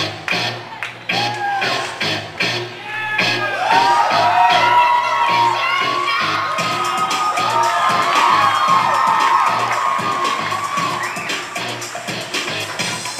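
Dance music with a steady beat playing over the gym's loudspeakers. About three and a half seconds in, a crowd starts cheering and shrieking over it, loudest around the middle and slowly easing off.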